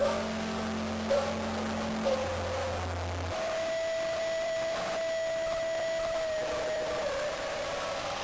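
Music: held low notes give way, a few seconds in, to one long steady high tone that dips in pitch near the end, with a howl-like quality.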